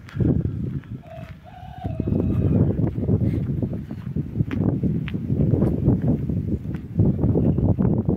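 A bird calls once, about a second in, with a short wavering call. After that, a dense low rumble of wind and handling noise on the phone's microphone takes over as it is carried along the dirt road, and this is the loudest sound.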